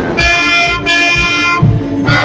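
Brass marching band playing: trumpets and sousaphone sound two long held chords with a short break between them, over a low beat.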